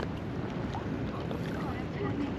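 Outdoor ambience with wind rumbling on the microphone and faint chatter of passers-by.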